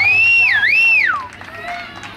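A loud two-finger whistle, close by: a high whistle that sweeps up, dips and rises again, then slides down and stops about a second and a half in.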